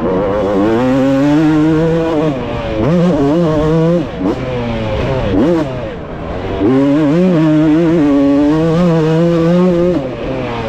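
1996 Honda CR250's single-cylinder two-stroke engine pulling hard on a motocross track, its revs climbing and falling several times as the rider shifts and briefly rolls off the throttle.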